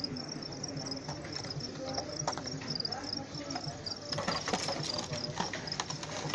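Crickets chirping in a continuous high-pitched trill, over shop background noise with faint voices. A handful of sharp clicks or knocks come about two-thirds of the way in.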